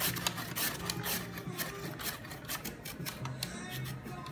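A carrot being pushed back and forth over a stainless steel mandoline's julienne blade, a quick run of repeated scraping, slicing strokes as it is shredded into thin strips.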